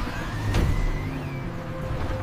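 Cartoon sound effects of a car stopping hard in an emergency: a low rumble with a rising, squeal-like tone and a sharp knock about half a second in.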